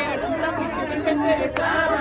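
Crowd chatter: many voices talking and calling out at once.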